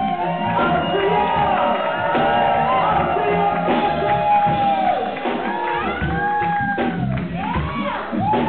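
Live band playing in a hall, with keyboard and guitar, and shouts and whoops over the music.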